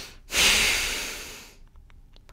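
A man's heavy sigh of disappointment: a long breath out that comes right after a breath in and fades away over about a second. A few faint clicks follow near the end.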